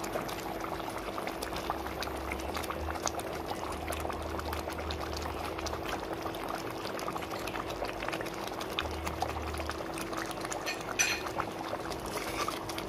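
Thick curry simmering in a pan, its bubbles popping in a steady crackle, over a faint steady hum. A single sharp knock comes near the end.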